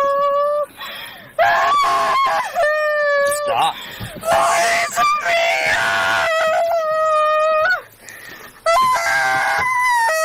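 A drunk young woman wailing in long, high-pitched held cries, one after another, with short breaks for breath between them and a rougher scream in the middle.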